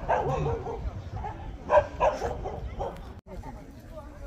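Jindo dog barking twice in quick succession about two seconds in, over a murmur of people's voices.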